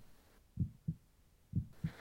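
Heartbeat sound effect: slow, low double thumps (lub-dub), about one beat a second, two full beats.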